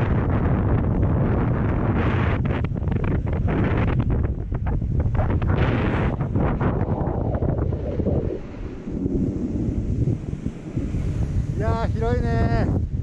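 Heavy wind rushing over the microphone of a camera moving fast down a ski slope, gusty and uneven, easing off after about eight seconds.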